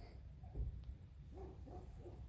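A dog barking in the distance: a quick run of short barks, about four a second, starting a little past halfway. Wind rumbles low on the microphone throughout, with one thump about half a second in.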